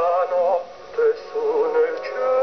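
A man singing a slow, lyrical operetta melody with wide vibrato, the phrase broken by a short breath a little after half a second in.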